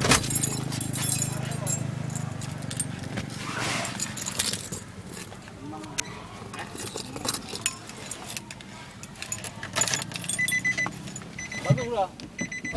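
A Nissan Grand Livina's 1.5-litre engine idling, heard from inside the cabin, under clicks, rattles and rustles from the seat slide and interior being handled. These are loudest in the first couple of seconds. Near the end comes a short run of high electronic beeps.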